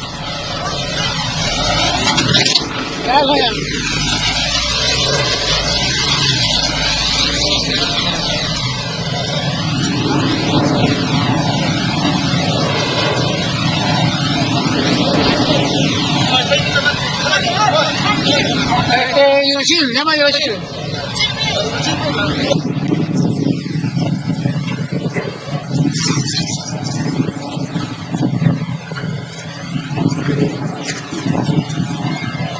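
Diesel engine of a Case backhoe loader, bogged down in wet sand, running steadily, with people's voices talking over it.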